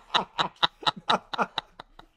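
Laughter: a run of short breathy laughs, about four a second, dying away near the end.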